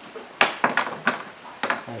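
Small round plastic access covers being set down on the perforated plastic cowl grille: a quick string of sharp clicks and taps.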